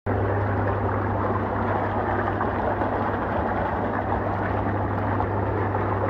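Hot tub jets bubbling and churning the water steadily, over a steady low hum from the tub's pump or blower motor.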